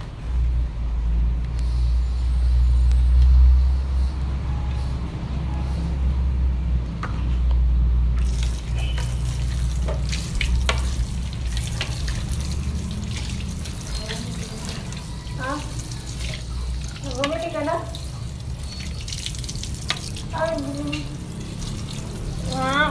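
Water from a tap running into a sink while plates are rinsed by hand, the hiss of the water starting about eight seconds in. A steady low rumble runs underneath, loudest in the first eight seconds.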